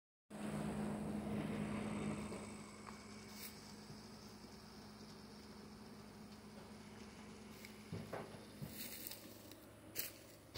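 Faint outdoor background: a low steady hum for the first two seconds or so, then quieter, with a few faint rustles and clicks near the end.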